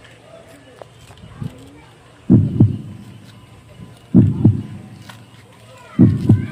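Heartbeat sound effect: a deep double thump, lub-dub, repeated three times about two seconds apart, starting about two seconds in.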